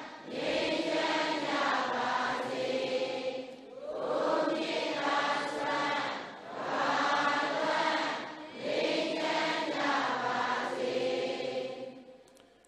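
A large Buddhist congregation chanting together in unison, in five long phrases of two to three seconds with short pauses for breath between them.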